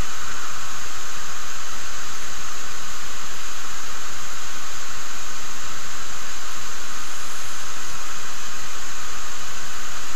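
Steady, loud hiss of recording noise, unchanging throughout, with no other distinct sound.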